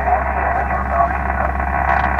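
Icom IC-7000 transceiver's speaker playing 20-metre single-sideband receive audio: a steady band hiss cut off sharply above and below, with faint voices of stations calling in under it.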